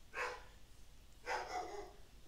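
A dog barking twice: a short bark at the start, then a longer one about a second later.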